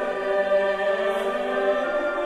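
Choir singing a sung part of the Mass in sustained chords, the notes changing about once a second.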